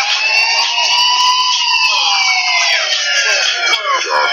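Siren-like sound effect in the soundtrack: one long smooth tone that rises over the first second, then falls slowly for about three seconds.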